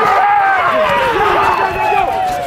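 Several voices shouting and calling out at once on a rugby pitch, long overlapping shouts that rise and fall in pitch.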